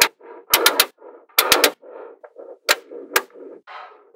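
Small metal magnetic balls snapping together in sharp clicks as blocks of them are joined, in quick clusters of two or three and then single clicks, with a softer rattle of balls shifting between the clicks.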